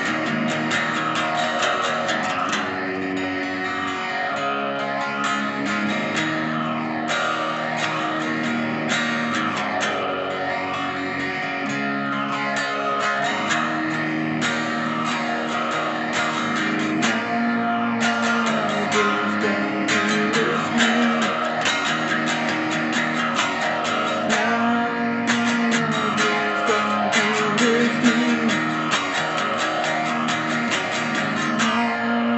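Electric guitar tuned down a half step to E-flat, playing the song's verse riff and chords continuously: picked notes and chord shapes with a steady, regular rhythm.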